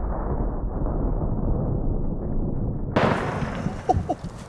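Slowed-down sound of a magnum revolver shot blowing apart a watermelon: a long, deep, muffled rumble with no high end. About three seconds in it cuts off abruptly into real-time outdoor sound.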